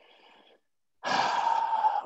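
A man taking a deep, audible breath close to the microphone, about a second long, in the second half; a faint short breath sound at the very start.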